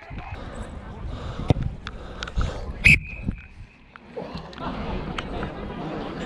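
A single short, sharp blast of a rugby referee's whistle about three seconds in, over low rumble, scattered knocks and faint distant shouts.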